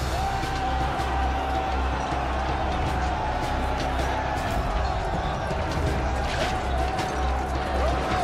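Dramatic background music with a long held note over a low pulsing rumble, with scattered short clashing impacts.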